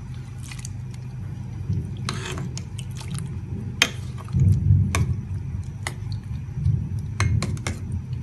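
A metal ladle stirs pineapple chunks through hot water in a stainless steel pot, with the liquid churning and sloshing throughout. Sharp clicks come as the ladle knocks against the pot's side, several of them through the middle and later part. The water is heating but not yet at a full boil.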